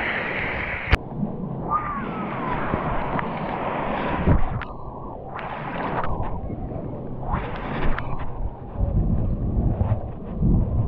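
Shallow sea water sloshing and splashing close to the microphone, with wind buffeting it. There is a sharp click about a second in, hiss that comes and goes through the middle, and low rumbling from the wind near the end.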